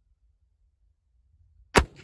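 A single shot from an Armi Sport reproduction 1863 Sharps carbine, a .54 calibre black-powder breech-loader, about three-quarters of the way in after near silence, with a short ringing tail.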